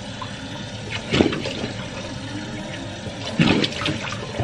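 Water running into a washbasin as a face is rinsed with cupped hands, with two louder splashes, about a second in and again near the end.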